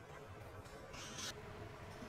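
Quiet room tone with a faint, short hiss about a second in.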